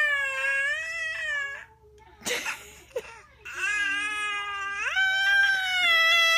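Baby wailing in two long, drawn-out cries, the second one stepping up in pitch partway through.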